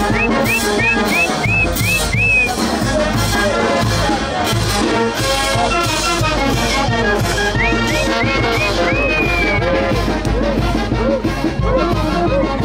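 A brass band playing lively festive Andean dance music with a steady beat. A lead instrument plays a run of short upward-scooping high notes near the start, and again about two-thirds of the way through.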